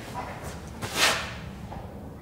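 Plastic body-filler spreader scraping soft filler across a steel body panel: a short scrape at the start and a longer, louder swish about a second in.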